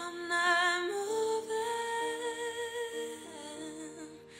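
A woman's voice singing a wordless, held melodic line with vibrato that steps up in pitch about a second in and then sustains, over steady sustained backing chords.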